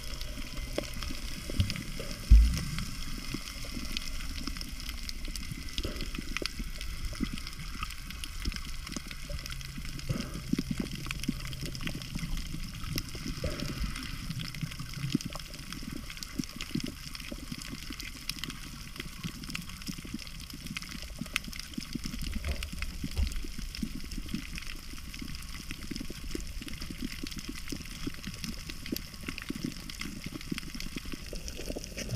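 Muffled underwater sound picked up by a submerged camera: a steady low rush of water movement with many small clicks and crackles, and one sharp low thump about two seconds in.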